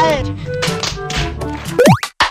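Soundtrack of an edited-in film clip: music with a voice and a few short clicks, then a quick rising sweep near the end.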